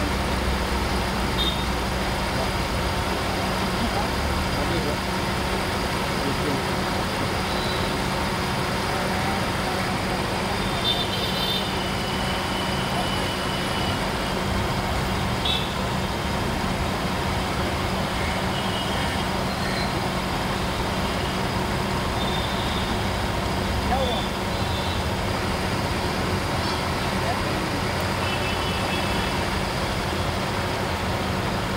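A car engine idling steadily with a constant low hum, under the open bonnet of a Hindustan Ambassador while its air-conditioning is charged with refrigerant through a gauge manifold.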